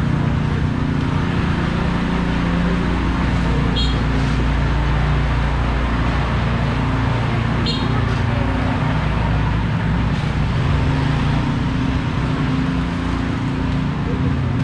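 Busy market-street ambience: a steady low motor hum from motorbike traffic, with people's voices in the background. Two short high-pitched chirps come a few seconds apart.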